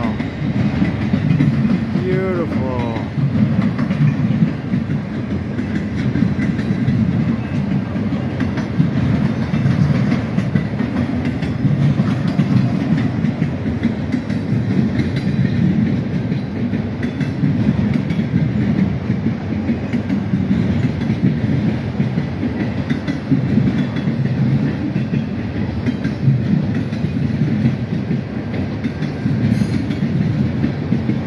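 A long freight train of autorack cars rolling past close by: a steady rumble of steel wheels on the rails, with many small clacks running through it.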